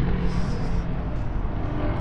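An engine running steadily at idle, a low even tone with no change in speed.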